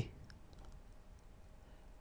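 A quiet pause with a few faint, short clicks in the first second.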